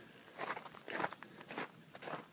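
Footsteps of a person walking: a few soft steps roughly half a second apart.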